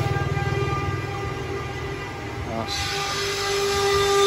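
Woodworking workshop machinery running: a steady motor hum with a fast low throb and a whine. About two and a half seconds in, a higher hiss cuts in and the whine grows louder, as another power tool starts.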